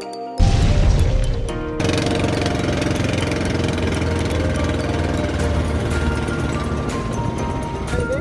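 Outrigger boat underway: a steady low engine rumble mixed with wind and water noise, starting suddenly about half a second in. Background music plays faintly under it.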